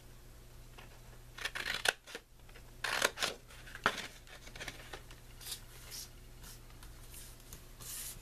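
Scissors snipping short slits into white cardstock, a few separate cuts with paper rustling as the sheet is turned and handled.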